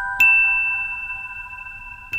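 Slow lullaby music on a bell-like mallet instrument. One high note is struck just after the start and rings on, fading slowly, while lower notes from before are still sounding beneath it.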